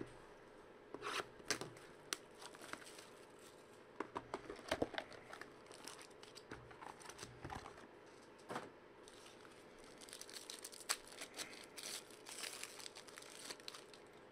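Foil trading-card pack wrapper crinkling and tearing as a pack is opened by hand, with scattered small clicks and taps from the cards and cardboard being handled.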